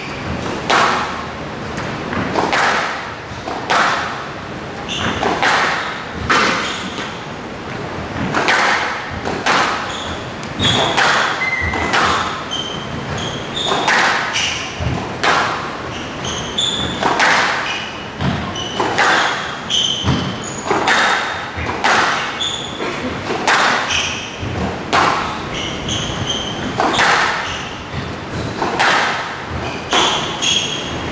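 Squash rally: the ball cracks off racquet strings and the court walls about once a second, echoing in a large hall, with short shoe squeaks on the court floor between the shots.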